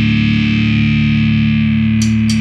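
Heavily distorted electric guitar holding one sustained chord that rings on steadily, with no drums under it.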